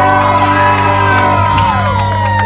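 Live band with electric guitar and bass holding a long final chord at the end of a song, with whoops from the crowd over it.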